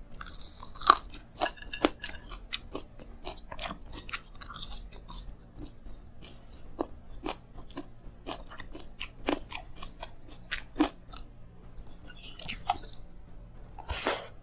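Close-miked chewing and crunching of food eaten by hand: a steady run of sharp, irregular crunchy clicks, a few louder bites about a second in.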